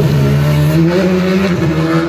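Rally car engine pulling hard under acceleration as it drives along a street stage, its pitch rising steadily.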